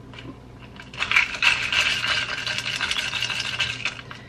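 Handheld battery milk frother whirring in a glass mug, starting about a second in, with a fast rattle.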